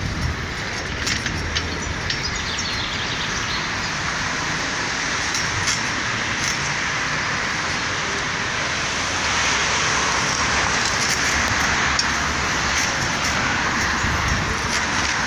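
Street traffic noise: cars passing on the road beside the sidewalk, a steady hiss of tyres and engines that grows louder past the middle. Some wind rumbles on the microphone near the start.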